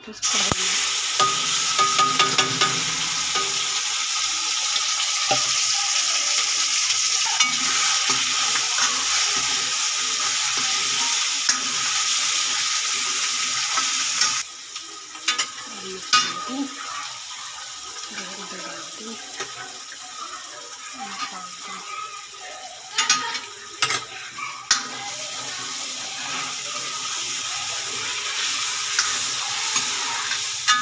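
Ground masala paste poured into hot oil in a metal kadai, sizzling loudly while a steel ladle stirs it. About halfway through the sizzle drops suddenly to a quieter frying, with the ladle clicking and knocking against the pan.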